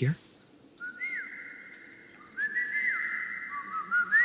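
A person whistling bird-like calls in imitation of a starling. Each note glides up and then holds: a short call about a second in, then a longer run of calls from about halfway through.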